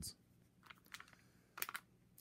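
Faint clicks and rustles of a freshly opened stack of baseball trading cards being handled and sorted, a few short snaps with the loudest cluster just past the middle.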